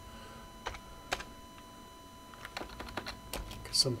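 A computer keyboard being typed on: a handful of separate keystrokes with pauses between them.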